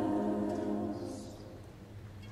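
Mixed choir holding a chord that fades away over about the first second, the sound then dying out in the church's reverberation.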